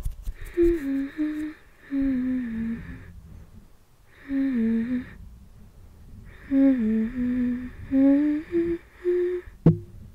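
A woman humming a slow, soft melody close to the microphone in short phrases with pauses between them, with a low rubbing from her fingertips on the microphone grille underneath. A single sharp click comes just before the end.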